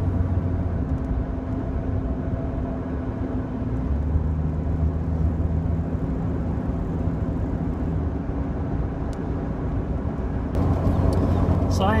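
Jeep Cherokee XJ driving at a steady cruise, heard from inside the cab: a steady engine drone under road noise, louder near the end.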